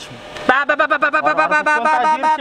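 A man talking quickly, starting about half a second in; no motorcycle engine is heard running.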